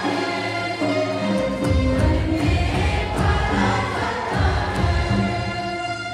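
Group of young women singing a Hindi Christian hymn together, amplified through a microphone, with low drum beats about once a second.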